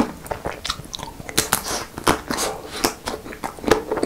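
Close-miked biting and chewing of the hard chocolate coating of an ice cream bar: a quick run of crisp cracks and crunches, several a second.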